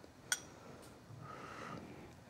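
A single light clink of a metal spoon against a small glass bowl of soup, then a faint soft breathy sound as the spoonful is tasted.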